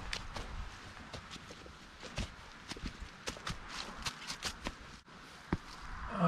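A hiker's footsteps on a dirt trail strewn with dry fallen leaves: a series of short footfalls, about two to three a second, with a brief lull about five seconds in.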